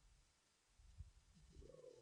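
Near silence: room tone, with a faint low sound in the second half.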